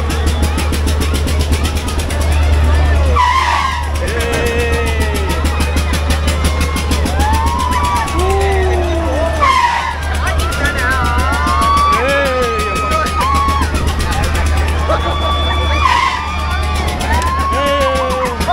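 Wind buffeting the microphone on a swinging fairground ride gives a steady low rumble, with a rush about every six seconds as the ride swings. Over it, riders shout and scream in rising and falling cries.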